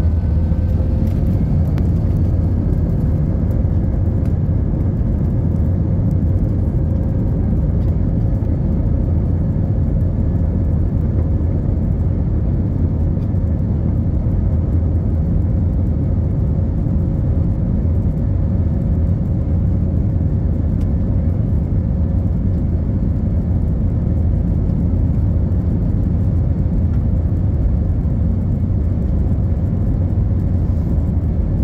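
Airbus A320-family airliner's jet engines and airflow heard from inside the cabin as the aircraft rolls along the runway: a steady, loud low rumble with a faint whine over it.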